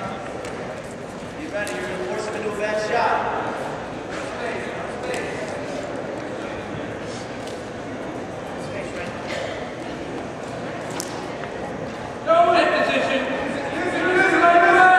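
Voices in a large gymnasium hall: a raised voice about two seconds in and a louder voice starting near the end, over the hall's steady background noise with a few faint ticks in between.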